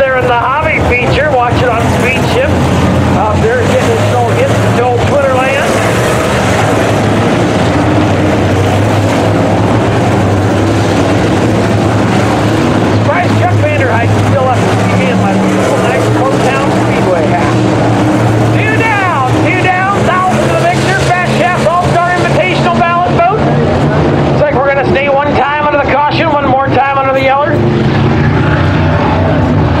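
A field of dirt-track modified race cars running laps, a steady loud engine drone with revs rising and falling as cars go by close to the fence.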